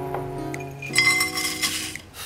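Sliced almonds poured from a ceramic cup into a stainless steel pan, clattering and clinking against the metal for about a second, starting a second in. A song plays in the background throughout.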